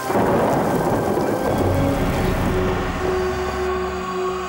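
A thunderclap breaks suddenly and rumbles away over two to three seconds, over the sound of rain and soft background music.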